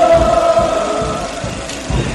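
A crowd chanting or singing in unison, holding long notes over a steady drum beat.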